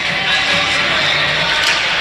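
Hockey rink ambience during a faceoff: a steady wash of arena noise with faint music underneath.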